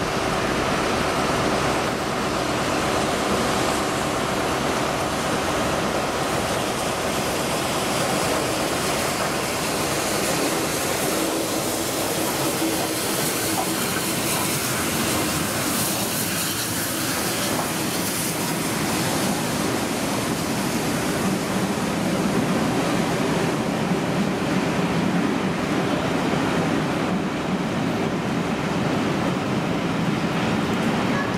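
Bulleid Battle of Britain class steam locomotive 34052 Lord Dowding and its train rolling slowly past, a steady rumble of wheels on rail with hiss. The hiss is brightest as the engine goes by about halfway through, and the rumble of the coaches grows after it.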